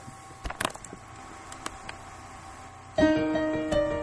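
A few knocks and clicks as the webcam is handled and turned. Then, about three seconds in, a digital keyboard with a piano sound starts a repeating intro riff in E-flat, quick notes over a held lower note.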